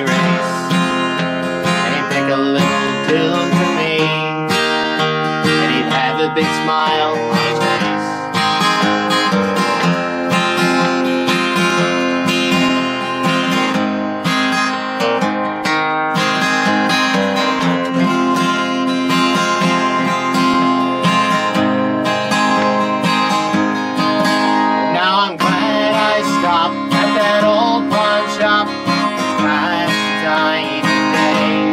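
Steel-string acoustic guitar strummed steadily, playing a country song.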